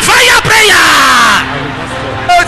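A large congregation shouting a declaration together, loud, with many voices overlapping and breaking off about a second and a half in. A steady held keyboard chord sounds underneath.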